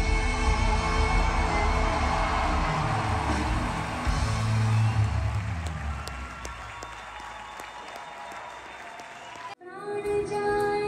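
Large concert audience applauding and cheering over the band's held closing notes, which fade away while scattered claps thin out. Just before the end the sound cuts off sharply and the next song's music starts.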